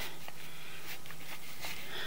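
Steady low background noise with a faint hum and a few soft ticks.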